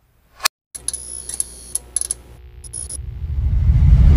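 Sound effects of an animated logo outro: a short sharp whoosh, then a run of high ticking, jingling strokes, then a low rumble that swells louder near the end.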